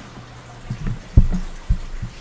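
A few short, soft, low thumps about half a second apart, with faint background noise between them.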